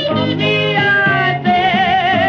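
1928 blues 78 record: a woman's voice holds a long wailing note over the accompaniment, with a wide vibrato in the second half.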